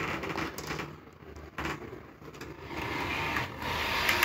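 H0-scale BR218 model diesel locomotive running along the track: the quiet whir of its small electric motor and wheels on the rails, with a few faint clicks, louder in the second half.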